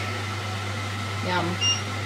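Steady low hum of a running kitchen appliance, with a short high beep about one and a half seconds in.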